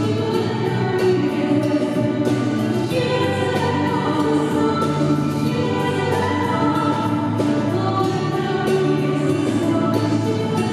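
Polish Christmas carol (kolęda) performed live by a band and a group of singers: voices singing together over a drum kit keeping a regular beat and a bass guitar.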